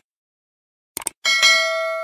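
A quick double click, then a bright bell ding that rings on and slowly fades: the click-and-notification-bell sound effect of a subscribe-button animation.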